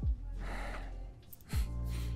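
A breathy gasp about half a second in, followed by faint lip-smacking clicks as a kiss begins. Lofi background music with a soft kick drum plays under it, the kick landing at the start and again about a second and a half later.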